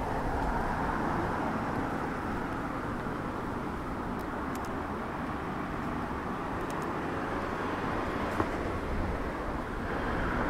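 Steady outdoor city ambience, mostly a distant traffic rumble, with a few faint high ticks and one sharp click about eight seconds in.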